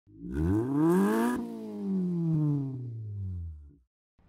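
Car engine sound effect: it revs up for about a second, then its pitch winds down slowly and fades out. A brief whoosh comes at the top of the rev.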